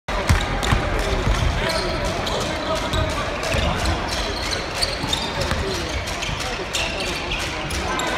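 A basketball bouncing repeatedly on a hardwood court as players dribble during live play, over the steady talk and shouts of spectators in a large sports hall.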